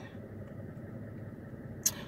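Steady low hum of a car cabin with the car parked, with one brief intake of breath near the end.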